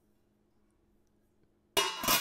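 Near silence with a faint low hum, then near the end a sharp metallic clang of a stainless steel lid against an All-Clad D5 stainless steel sauté pan, ringing on.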